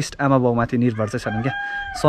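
A rooster crowing in the background: one long, level-pitched call held for about a second in the second half, heard over a man talking.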